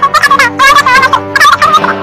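A high-pitched, warbling cartoon voice squealing in a string of short calls without words, over background music.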